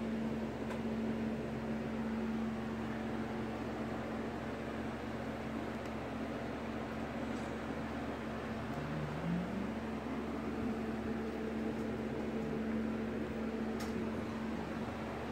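Steady electrical hum and whir, with a brief rising tone about nine seconds in.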